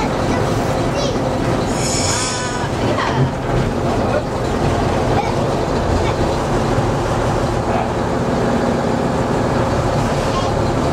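Diesel shunting locomotive running along the track, heard from inside its cab: a steady engine rumble with wheel and rail noise. A brief high squeal comes about two seconds in.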